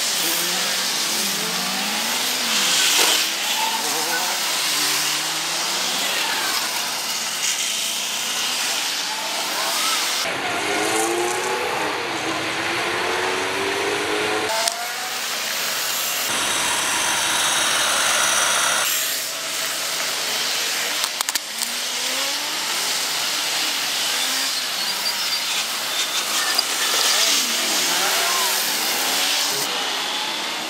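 Road traffic at an intersection: cars driving past, their engines rising and falling in pitch as they accelerate away, with tyre noise on the asphalt. The sound changes abruptly several times in the middle, where the recording is cut.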